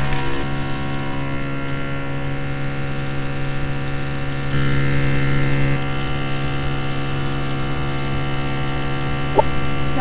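Airbrush makeup compressor running with a steady, even hum that swells slightly for about a second midway.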